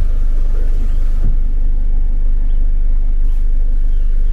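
A vehicle engine idling steadily, a constant low rumble heard from inside the stationary vehicle's cab.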